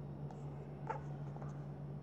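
Faint taps and scratches of drawing on a tablet's touchscreen, a few light ticks over a steady low hum.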